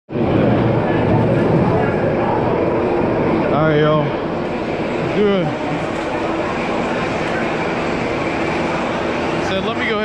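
Busy roller-coaster loading-station ambience: many people talking at once, with a couple of louder single voices standing out about four and five seconds in.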